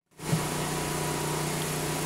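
Steady mechanical hum of an engine or motor running at one even pitch, without change.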